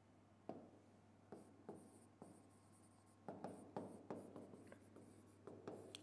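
Faint taps and short scratches of a pen tip writing on the glass of an interactive display screen: a few separate taps in the first half, then a quicker run of writing strokes in the second half.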